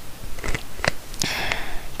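A person's breath drawn in close to the microphone between spoken phrases, after a few small clicks.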